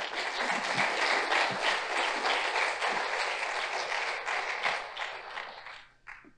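Audience clapping, a dense spread of many hands that starts at once and dies away just before the end.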